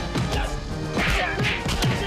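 Staged fistfight: a series of sharp punch and blow sound effects over dramatic background music.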